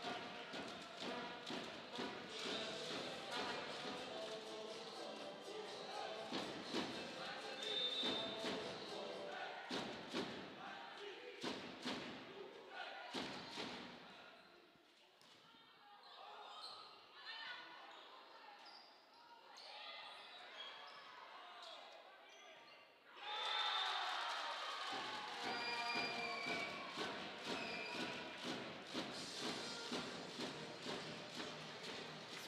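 Volleyball being played in a sports hall: the ball is struck and bounces with echoing thuds among players' and spectators' voices. The noise drops for several seconds in the middle, then rises again with louder voices about two-thirds of the way through.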